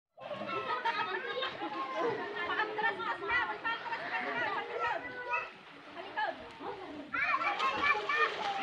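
Several voices, children's among them, talking and calling out over one another, with a brief lull a little past the middle.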